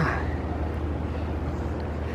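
Steady low rumble of outdoor street ambience, with a brief short sound at the very start.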